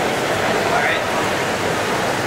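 Steady roar of a gas-fired glory hole, the glassblower's reheating furnace, with a glass gather on a blowpipe held in its opening to reheat.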